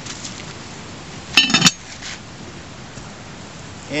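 Metal lid put on a metal cooking pot: a brief double clank with a ringing edge, about a second and a half in.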